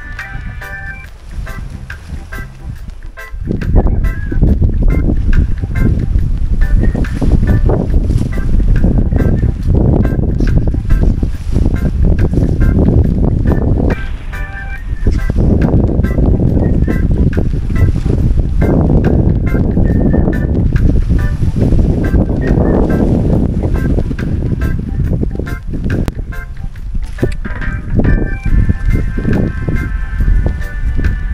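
Background music, buried from about three seconds in under loud gusting wind rumble on the microphone.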